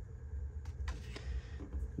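Quiet room tone with a steady low hum, and a few faint taps and paper rustles as a paper menu card is handled and set down on a wooden desk.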